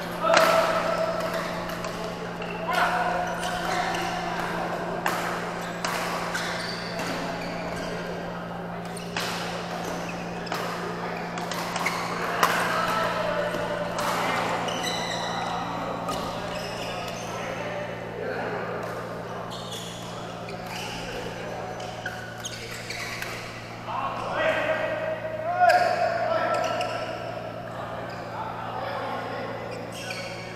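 Badminton play in a large echoing hall: sharp racket hits on the shuttlecock among players' voices and calls, over a steady low hum. The loudest hits and shouts come just after the start and again about 25 seconds in.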